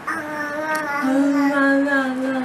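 A single voice singing two long held notes without words, the second a little lower and held for over a second.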